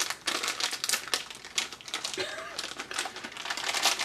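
Plastic candy bag crinkling in quick, irregular bursts as it is handled and opened.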